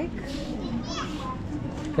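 Children's voices and chatter in the background of a busy street, with a brief high-pitched sound about a second in.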